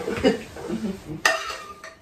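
A spoon scraping and clinking against a frying pan as scrambled egg is served out onto plates, with one sharp clink about a second in.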